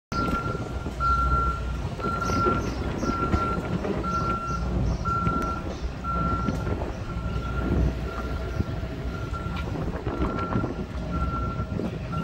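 Vehicle reversing alarm beeping at a steady pace of about one half-second beep a second on a single high tone, over a low, uneven background rumble.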